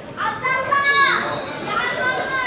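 Young voices shouting and calling out, with one loud, drawn-out shout about half a second in.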